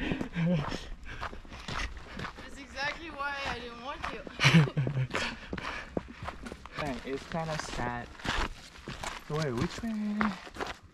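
Short snatches of a person's voice, with footsteps on a dirt trail.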